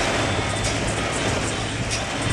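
Heavy rain pelting the roof and windshield of an Isuzu Crosswind, heard from inside the cabin. A windshield wiper sweeps the glass and the engine hums steadily underneath.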